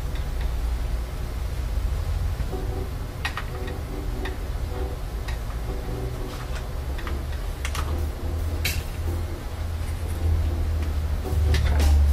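A few scattered sharp clicks and ticks of a screwdriver and small screws against a laptop's plastic bottom panel, over a steady low hum.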